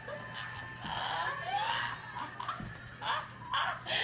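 People laughing quietly and breathily, with high-pitched stifled giggles about a second in and again near the end.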